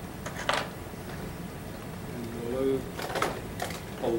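A few light, sharp clicks from fly-tying tools at the vise as the thread is whip-finished at the fly's head, then snips near the end as the tying thread is cut.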